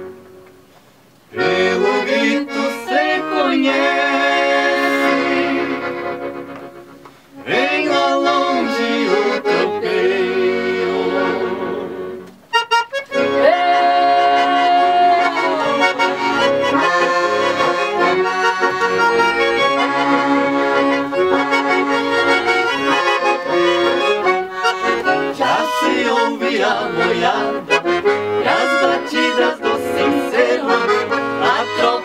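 Two piano accordions playing a gaúcho serrana tune as an instrumental duet. Two opening phrases each fade away with a short pause after them, then the playing runs on steadily from a little under halfway in.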